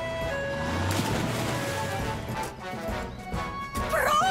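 Cartoon background music with held notes. About a second in, a loud rushing noise with a low rumble swells and fades over a second or so: a sound effect for the red six-wheeled rescue vehicle pulling up.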